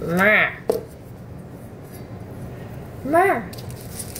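A woman's voice making two short sing-song vocal sounds, rising and falling in pitch, about three seconds apart. A light click comes just after the first, and a steady low hum runs under both.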